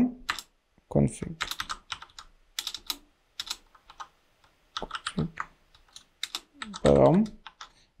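Typing on a computer keyboard: irregular runs of key clicks with short pauses between them.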